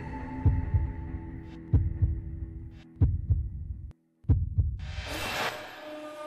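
Dance music with a sparse beat: deep bass kicks in pairs over a held synth tone, cutting out to silence for a moment about four seconds in, then a loud noisy swell near the end.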